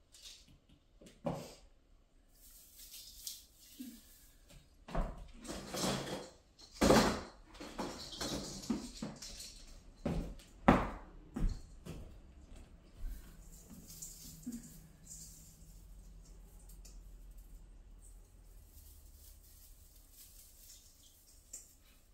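Handling noises of Christmas ornaments being taken from a plastic storage bin and hung on an aluminum tinsel tree: rustling with scattered knocks and clinks, the loudest about 7 and 11 seconds in, growing quieter in the second half.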